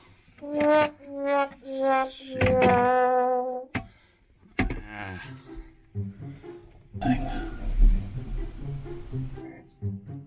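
Comic 'sad trombone'-style brass sting: four notes stepping down in pitch, the last one held. Later, a hiss of water spraying from a leaking faucet fitting lasts about two and a half seconds near the end.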